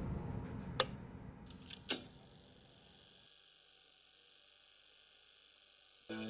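A low rumble dying away, broken by two sharp clicks about a second apart, then a faint steady high hiss.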